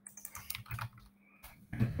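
Computer keyboard typing: a quick run of keystrokes as a short word is typed into a text field, the clicks thinning out after about a second.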